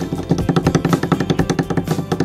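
A rapid drumroll, about ten strokes a second, over background music, building suspense before a score is announced.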